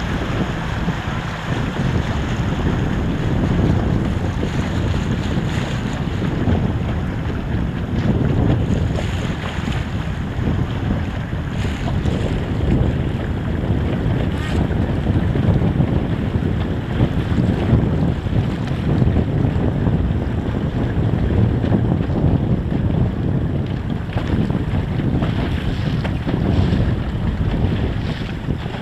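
Wind buffeting the microphone, a rough low rumble that rises and falls, with water splashing against the hull of a small boat.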